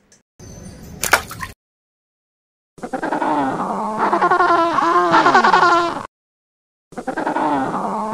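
King penguins calling: a loud, wavering, rapidly pulsing call of about three seconds, then after a brief pause a second call begins near the end. Before the calls, a short rustle with a click in the first second or so.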